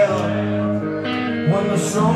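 Rock band playing live: electric guitar to the fore over bass and drums, between sung lines.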